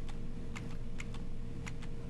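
Computer keyboard keys tapped repeatedly: a run of light, irregular clicks, several a second, over a faint steady hum.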